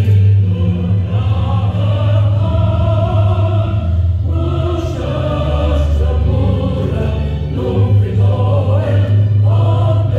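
Choral music: a choir singing a slow, sustained piece over a steady low instrumental accompaniment, loud and continuous.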